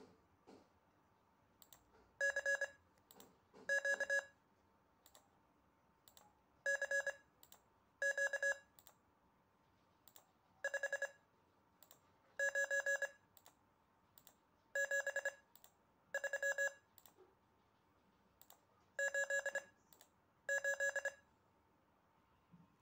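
A computer Morse code trainer beeps out Morse characters as each one is clicked, in short bursts of dots and dashes on a tone of about 558 Hz. There are ten characters in five pairs, spelling CQ CQ 59 73 88.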